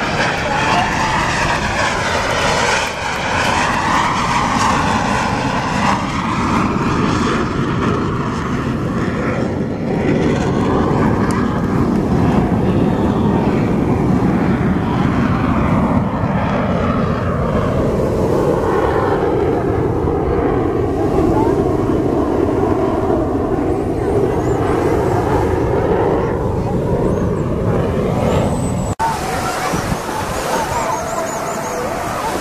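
Aermacchi MB-339 jet trainers of the Frecce Tricolori flying a display, their Rolls-Royce Viper turbojets making a loud, continuous roar. The roar swells and sweeps slowly up and down in pitch as the jets manoeuvre past.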